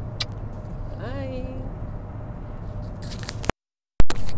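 Steady low drone of a moving car heard from inside the cabin, with a click near the start and a brief voiced hum about a second in. Rustling clicks from handling the earphone microphone follow near the end, then the sound cuts off to silence.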